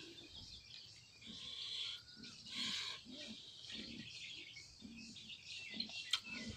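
Faint birds chirping in the background, with a row of soft, low, close-up noises about every half second while food is eaten by hand.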